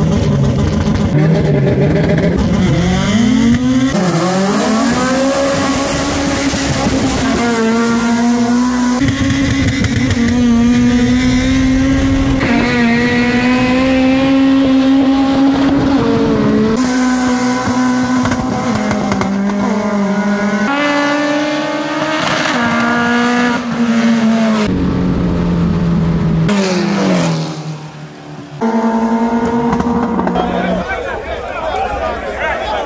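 Drag-race car engines run hard at high revs, holding a high pitch that rises and drops sharply several times, at gear changes or edit cuts. The sound dips briefly near the end.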